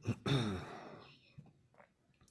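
A person sighing: one breathy exhale with a falling voice in the first second.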